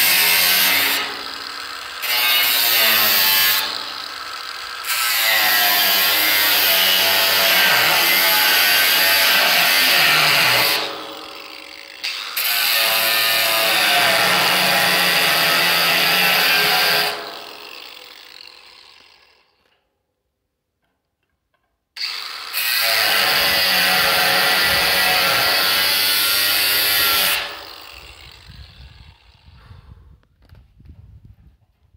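Cordless angle grinder cutting into the steel lid of a metal drum, loud and dense, with its level dipping briefly a few times. It winds down about 17 seconds in. After a couple of seconds of silence it starts again and cuts for about five seconds more, then spins down near the end.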